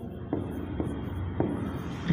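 Hand writing on a board: the tip rubbing across the surface as letters are formed, with a few light taps as it touches down.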